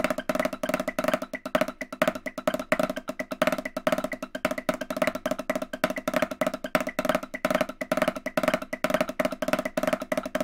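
Snare drum played with wooden sticks in a fast, continuous stream of double strokes (diddles). Some strokes are louder than others, as accents.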